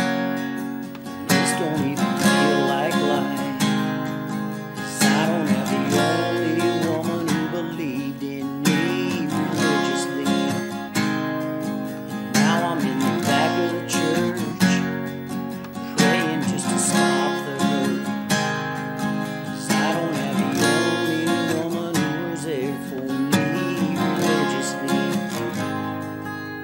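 Acoustic guitar with a capo on the first fret, playing the song's picking and strumming pattern: struck chords ringing out in a steady rhythm.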